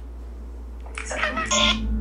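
Speech: a person starts talking about a second in, over a steady low hum.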